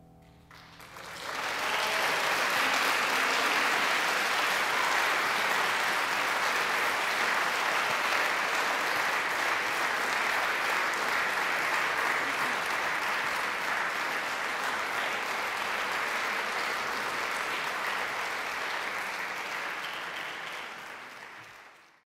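Audience applauding, breaking out about a second in as the last piano chord dies away, then steady, and fading out near the end.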